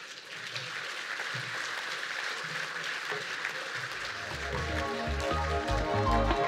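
Audience applause, a dense patter of many hands clapping. About four seconds in, music with a heavy bass beat comes in over it and grows louder.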